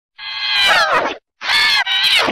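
Heavily pitch-shifted, distorted high-pitched cries in the style of a 'G-Major' audio effect: a long wail that falls in pitch near its end, a short break, then a second cry.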